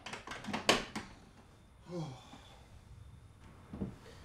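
A quick run of sharp knocks and clicks as a door is pushed shut and its latch catches, followed by a single knock near the end.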